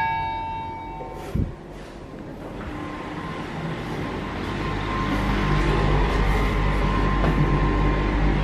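The last notes of background music ring out, then a single thump. A steady low hum with a faint high whine builds up and holds: the running hum of a passenger lift.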